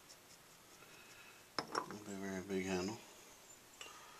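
A man's voice, a short drawn-out hum or mumble about two seconds in, just after a light tap. The rest is quiet room sound.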